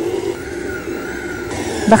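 Kenwood stand mixer running at a steady speed, its beater creaming butter and sugar in the stainless-steel bowl; a steady motor hum.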